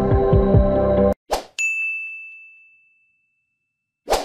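Background music cuts off about a second in, followed by a short whoosh and then a single bright bell-like ding that rings and fades away over about a second: a sound effect from a like-and-subscribe outro animation.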